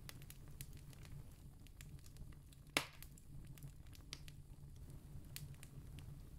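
Faint room tone of a voice recording during a pause: a steady low hum with scattered light clicks, and one sharper click near the middle.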